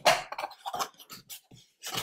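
Cardboard box lid being lifted and slid off its base by hand: a handful of short scrapes and taps of card rubbing on card.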